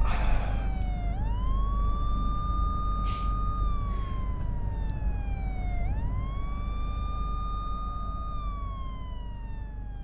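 Ambulance siren on a slow wail: the pitch sweeps up quickly, holds a high note for a couple of seconds, then slides slowly down, twice over, above a low rumble, fading gradually toward the end.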